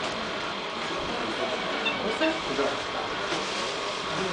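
Indistinct murmur of children and adults talking in a crowded room, with scattered faint voice fragments and no clear words.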